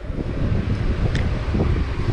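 Wind buffeting the camera's microphone: a steady, irregular low rumble.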